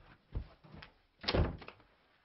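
A wooden interior door being slammed shut: a few light knocks, then one loud bang about a second and a quarter in.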